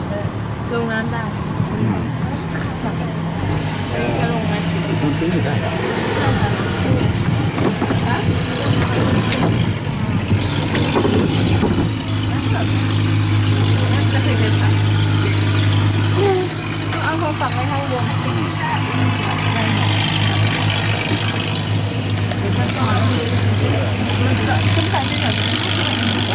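Long-tail boat engine running steadily with a low hum. It grows louder for a few seconds around the middle, then drops back suddenly, with people talking over it.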